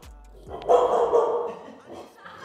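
A dog barking, a loud rough burst about half a second in that lasts under a second.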